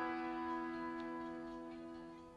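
Harmonium holding a sustained chord, several reed tones sounding together and slowly fading.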